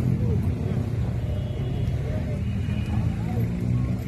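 A motorcycle engine idling steadily close by, with people talking in the background.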